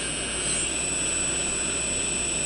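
A quadcopter's electric motors running together with a steady high multi-tone whine. About half a second in, one tone glides up in pitch and the sound grows slightly louder as the motor speeds come up toward even, after running unevenly (one strong, the others weak).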